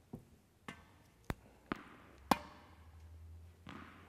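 A tennis ball bouncing on a hard indoor court: five light knocks about half a second apart, the last the loudest, then a faint low hum.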